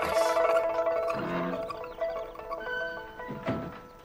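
Background music of held, sustained notes that fades away near the end. There is a short loud outburst right at the start and a brief low thud about three and a half seconds in.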